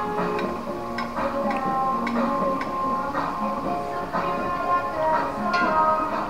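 Background music: held melodic notes changing one after another, with a few light ticks.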